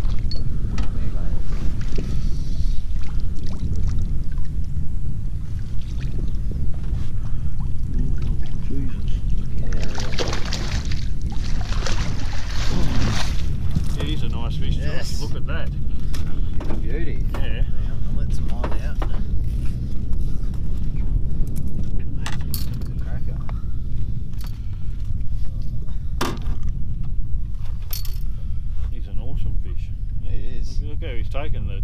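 A hooked trout splashing at the surface and thrashing in a landing net as it is scooped from the water, loudest in a burst of splashing about ten to thirteen seconds in, with a few sharp clicks later on. A steady low rumble and some muffled voices run underneath.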